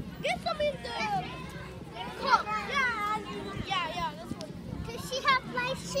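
Young children's voices chattering and calling out as they play.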